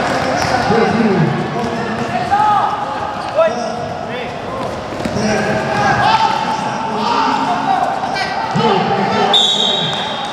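Live basketball play in a large echoing hall: the ball bouncing on the court amid players' shouts and voices. A short steady high tone sounds near the end.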